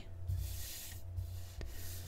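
A hand and tarot cards sliding over a tabletop, a soft rubbing swish, with one small click about one and a half seconds in.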